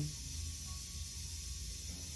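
Steady background hiss with a low hum underneath: room tone, with no distinct event.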